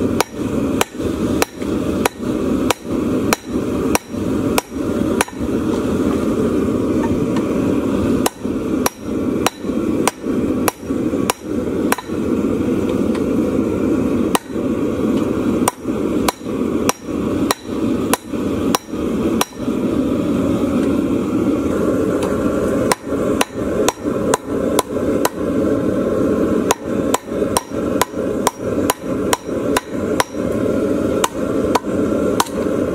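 Hand hammer striking a red-hot steel wood rasp held in tongs on a round post anvil. The blows come in runs of about two a second, broken by a few short pauses, over a steady low rushing noise.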